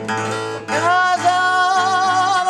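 Unamplified acoustic guitar strumming chords in Sardinian canto a chitarra, a 'secondo' in D. About two-thirds of a second in, a male singer comes in, sliding up into one long held high note with a slight vibrato over the guitar.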